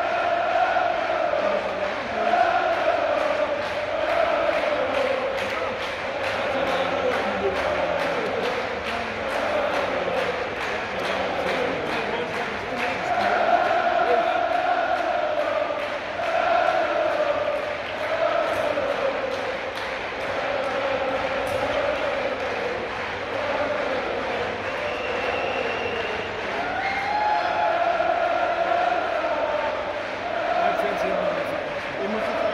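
Large football crowd in a stadium singing a chant together in long, drawn-out phrases that repeat, over a steady beat.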